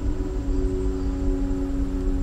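Background ambient music: a sustained low drone of several steady tones over a low rumble.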